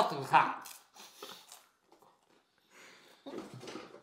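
Quiet voices: a man's voice trails off in the first second, then near quiet with faint small sounds, and low breathy vocal sounds start again near the end.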